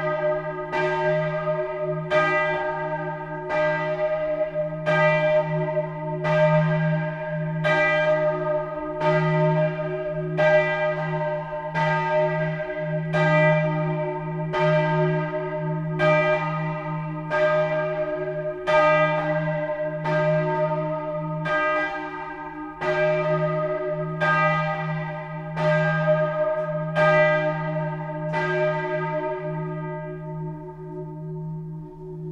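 Bell 2 of the parish church of Sts. Anthony Abbot and Christina in St. Christina in Gröden, a large bronze swinging bell, ringing alone. Its clapper strikes about once a second over a steady low hum. The strikes stop near the end, leaving the bell's ringing to die away.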